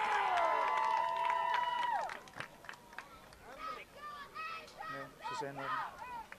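Distant voices of players and spectators calling out across an open field. For the first two seconds several long calls are held together and then stop at once. After that come scattered short shouts.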